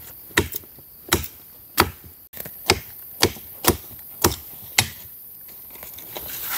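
A machete blade chopping a dry, dead branch on the forest floor: a steady run of about nine sharp, hard strikes, roughly two a second, with a short break partway through.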